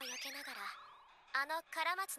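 Quiet anime dialogue: a character's voice speaking Japanese in short phrases, with a brief sound falling steeply in pitch at the start.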